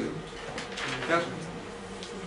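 A short voiced utterance, speech-like, about half a second to a second in, over a steady low hum.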